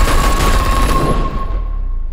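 A rapid volley of handgun shots, many in quick succession, thinning out after about a second. A single steady high tone is held under the shots and stops near the end.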